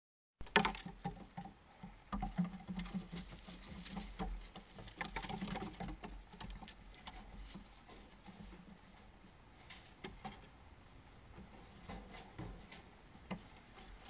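Young stone martens scampering on wooden floorboards: an irregular patter of small paw taps and scrabbles, busiest in the first half and sparser later.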